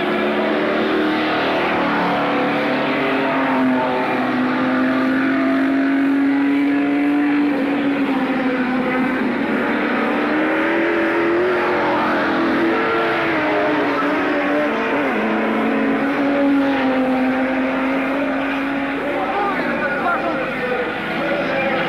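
Several stock car engines running hard as the cars race around an oval, their pitch holding steady for seconds and then sagging and rising again as they lift and accelerate through the turns.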